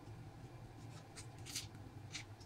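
Faint scattered crackles and rustles of fingers handling and peeling a grilled prawn, the sharpest about a second and a half in, over a low steady hum.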